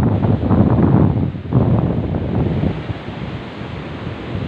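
Wind buffeting the phone's microphone: a loud, uneven, gusty rumble that eases off in the second half.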